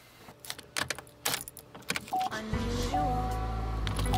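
A bunch of keys jangling and clinking in short separate bursts. About two and a half seconds in, music with a steady bass line comes in.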